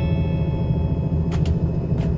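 Cabin sound of a KiHa 183 series diesel express train running: a steady low rumble from the engine and wheels, with a steady high ringing tone over it and a brief click about a second and a half in.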